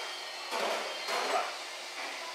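Ramen shop room noise: a steady hiss of kitchen background, with two short, muffled louder sounds about half a second and a second in.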